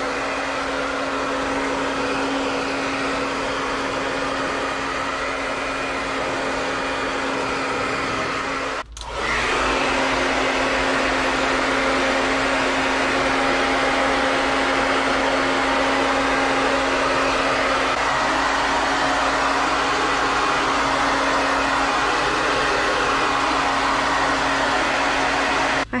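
Handheld hair dryer running steadily, blowing a steady whooshing noise with a low hum, as it dries a small wet dog. It cuts out briefly about nine seconds in and comes back a little louder.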